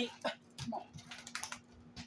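A few soft, separate clicks and taps of eating at the table, over a faint steady hum.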